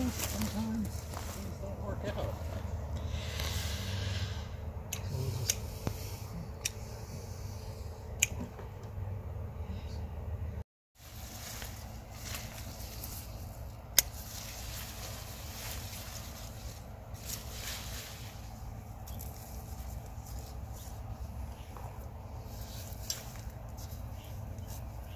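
Hand pruners snipping sweet potato vines amid rustling of leaves and straw mulch, with a few sharp clicks standing out. The sound drops out briefly about eleven seconds in.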